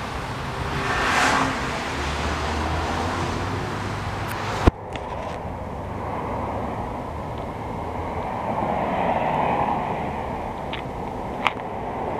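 Outdoor road-traffic noise, with vehicles passing by about a second in and again near the end. About halfway through a sharp click cuts in and the background suddenly becomes duller.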